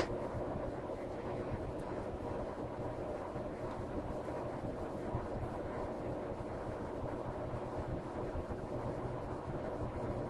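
A steady low hum with faint hiss, room or equipment background noise, with one brief click right at the start.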